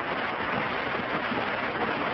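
Steady hiss and background noise of an old, band-limited sermon recording, with no clear speech in it.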